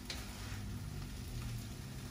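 Faint sizzling of shrimp fried rice in a hot wok still on the burner, with a light spoon tap at the start over a low steady hum.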